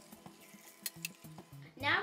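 Vinegar being poured from small glass flasks into plastic water bottles: a faint pour with two light clinks of glass about a second in, under soft background music.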